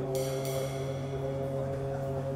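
Free-improvised music: several low tones held steady throughout, with a cymbal lying flat on a drum rubbed with a drumstick, giving a high metallic ringing that starts just after the opening and fades within about half a second.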